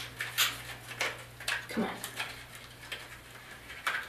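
Small cosmetics package being worked open by hand: a few scattered sharp clicks and crinkles as the packaging resists, over a low steady hum.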